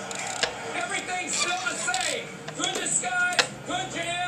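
High-pitched voice sounds without clear words, with a couple of sharp clicks, one about half a second in and one near the end.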